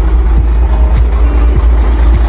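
Truck engine running steadily with a heavy low rumble, with a few light clicks.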